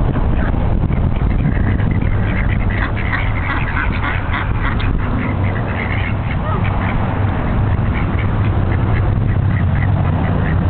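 A flock of ducks quacking in many short, overlapping calls that grow busier from a few seconds in, over a steady low rumble.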